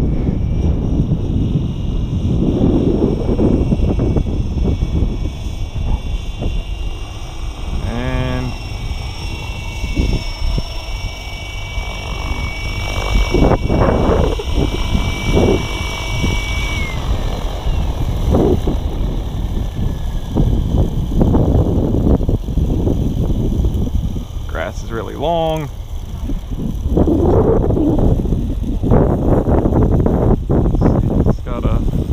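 Align T-Rex 760X electric RC helicopter running in normal mode and settling onto grass: a steady motor and rotor whine over a low rumble. About 17 s in the whine glides down and fades as the rotor spools down after touchdown, the phase in which the owner is still chasing a shake in the head.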